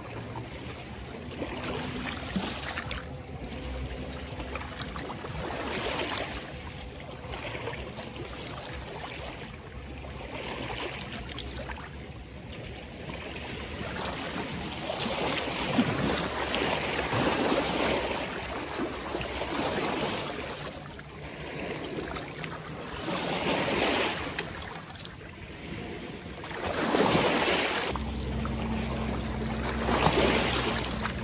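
Small lake waves lapping and washing over the rocks at the shoreline, swelling and falling every few seconds with stronger washes now and then. A low motor hum from a passing jet ski comes in near the end.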